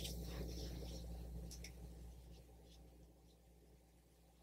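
Faint, soft rubbing of fingertips on skin as serum is massaged into the neck, fading away over the first three seconds, over a low steady hum.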